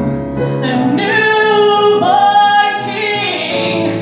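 A woman singing into a handheld microphone, holding long notes that change pitch every second or so, over an instrumental accompaniment.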